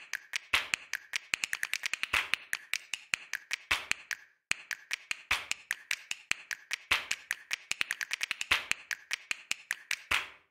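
A rapid, irregular run of sharp clicks or taps, with a short break about four seconds in.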